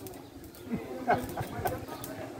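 A dove cooing faintly in the background, a few short low notes.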